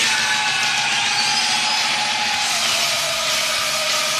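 A radio broadcast's produced sound effect or jingle bed: a steady, dense rush of noise with faint held tones running through it, at an even level throughout.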